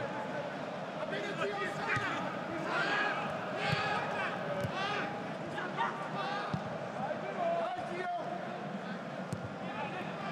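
Football players shouting and calling to one another on the pitch, with occasional thuds of the ball being kicked, in an empty stadium with no crowd noise.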